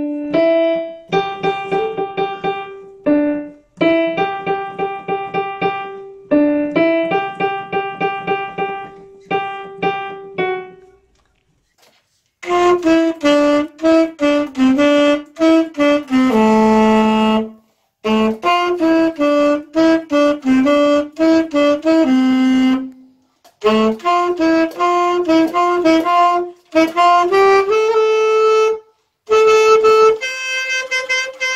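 A child plays a simple melody on a piano in short, repeated phrases of single struck notes for about the first eleven seconds. After a short pause, a saxophone plays a melody of held notes, broken by brief breath pauses.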